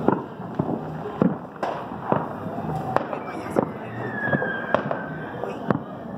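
Distant fireworks and gunshots going off: about nine sharp bangs at uneven intervals, with a long falling whistle through the middle.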